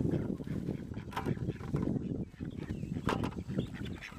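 A flock of chickens and ducks crowding and pecking at a pile of corn husk scraps: a dense rustling of husks and scratching, with a few short quacks and squawks about a second in and near three seconds.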